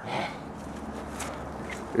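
Footsteps on grass and bare dirt over a steady outdoor hiss, with a few faint taps.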